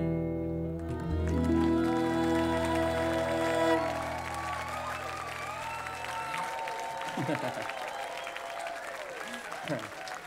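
An acoustic bluegrass band of guitars, mandolin, fiddle and upright bass ends a song on a held final chord that rings for about six seconds. The audience then applauds, with a few whoops.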